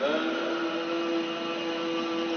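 A man's voice chanting the adhan, the Islamic call to prayer, into a microphone: a single long-held note that slides up briefly as it begins.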